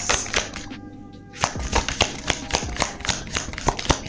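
Tarot cards being shuffled and handled: a quick, uneven run of soft clicks, with background music underneath.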